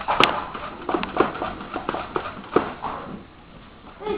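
A series of irregular knocks and taps, about eight in the first three seconds, the sharpest just after the start, then quieter near the end.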